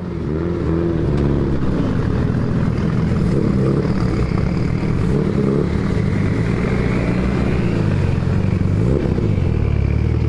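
A vehicle engine running steadily, its revs rising and falling repeatedly.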